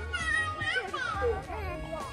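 Young children's high voices talking and calling out over background music with a repeating bass beat.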